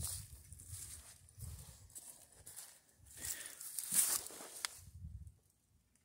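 Faint footsteps and rustling on grass strewn with dry leaves, with handling noise from the handheld camera as it is carried and lowered. The sound drops to near silence shortly before the end.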